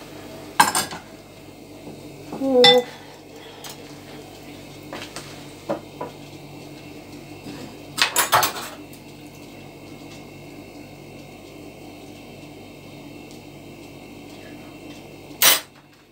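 Scattered clinks and knocks of a spoon and dishes around an earthenware tajine dish, a few single ones and a short cluster about eight seconds in, over a steady low hum.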